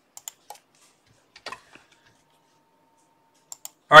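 A few sharp, scattered computer keyboard clicks with near silence between them.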